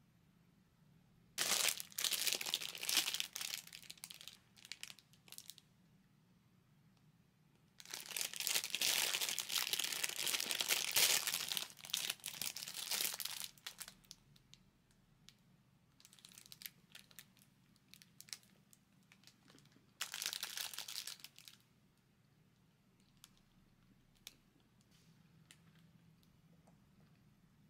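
Thin plastic food and product wrapping crinkling as it is handled, in several bursts, the longest about six seconds, with quiet stretches between.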